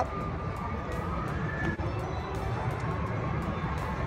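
Faint background music over steady outdoor ambience with a low rumble.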